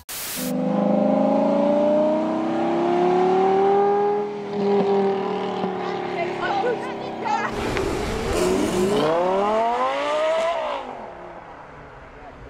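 Lamborghini Gallardo 5.0-litre V10 pulling away, its exhaust note climbing slowly in pitch. About seven and a half seconds in it gives way to a Gallardo with the 5.2-litre V10, which revs up sharply and then fades near the end.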